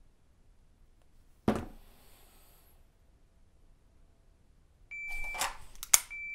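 A shot-timer beep about five seconds in, then a rustle as the pistol is drawn and presented, ending in a single sharp click just before the end: the trigger being pressed on an empty chamber in dry fire.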